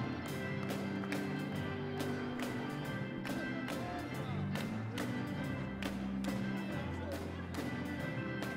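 Live church band playing gospel music: a drum kit keeping a steady beat with cymbal strikes, under held electric organ chords, keyboard and guitar.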